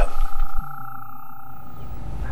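Steady high-pitched tones over a low hum, the overall level dropping slightly about half a second in.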